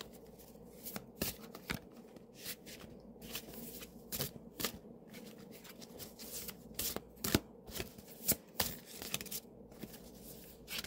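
A Crow Tarot deck being shuffled in the hands: an irregular run of card clicks and snaps, a few louder than the rest.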